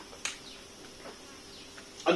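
Faint room tone in a pause between speech: a steady low hum with one sharp click about a quarter second in.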